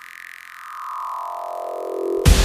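Held synthesizer chord whose brightness sweeps up and then back down.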